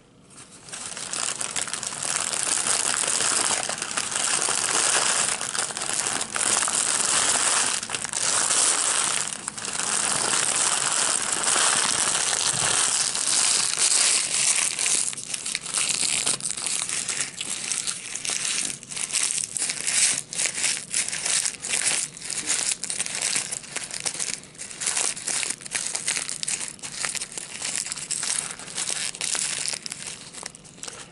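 A Subway sandwich wrapper being crumpled and squeezed into a ball by hand: continuous crinkling at first, turning into sparser, separate crackles about halfway through as it is packed tighter.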